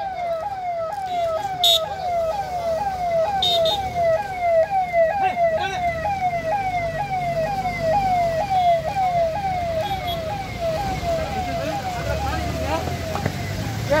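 Vehicle siren sounding a fast repeating downward sweep, about two and a half times a second, over the rumble of passing vehicles; it weakens near the end.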